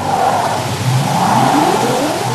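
A broadcast-ident sound effect: a loud, engine-like rush of noise whose pitch climbs steadily from about a second in, like a car accelerating.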